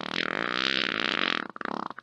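A long cartoon fart sound effect, held for about a second and a half, then breaking into a few short sputters near the end.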